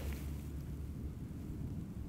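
Quiet, steady low rumble of wind on the microphone, with no distinct events.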